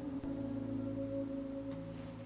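Soft instrumental background music of long held notes, ringing like a gong or singing bowl, that change pitch just after the start and fade a little toward the end.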